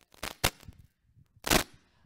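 Microphone handling noise: a few short knocks and rubs, the loudest about one and a half seconds in.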